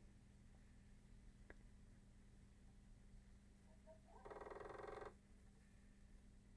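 Near silence: room tone with a faint steady hum, one faint click about one and a half seconds in, and a brief faint sound lasting about a second just after the four-second mark.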